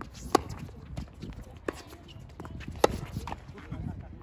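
Tennis rackets striking the ball in a doubles rally: three sharp, ringing hits about a second and a quarter apart, the third the loudest, with players' footsteps on the hard court between shots.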